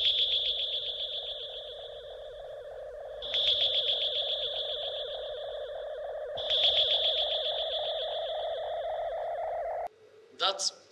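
A played-back sound-effect cue: a steady hum under a high, fast-pulsing tone that comes in three times, about every three seconds, each time fading, then cuts off suddenly.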